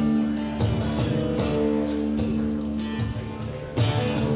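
Acoustic guitar strummed, opening a song: chords struck every second or so, their notes ringing on between strokes.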